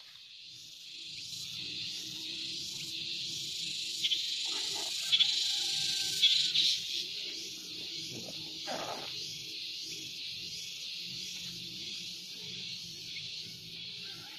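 Wild birds calling over a steady high hiss, with a few short whistled calls between about four and seven seconds in.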